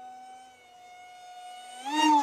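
Electric RC park jet's DYS BE2208 2600 Kv brushless motor spinning a Master Airscrew 6x4x3 three-blade prop in flight, a steady EDF-like whine. It grows louder and rises in pitch near the end as the plane comes in low for a close pass.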